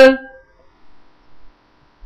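A man's drawn-out last syllable trails off in the first moment, followed by a quiet pause with only a faint steady hum, until his speech resumes at the very end.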